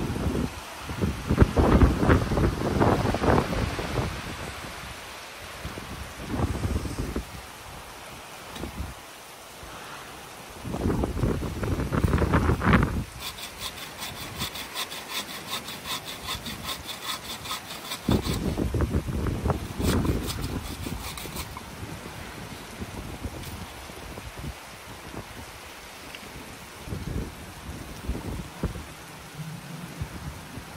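Dry branches being handled on the ground, then a wooden-frame bow saw cutting through a branch in quick, even back-and-forth strokes for several seconds through the middle.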